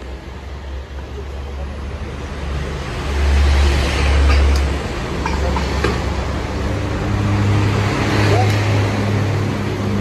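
Low, steady motor rumble that swells about three seconds in and rises again from about seven seconds, with a few light clinks of a wheel being fitted and clamped onto a wheel-balancing machine's shaft.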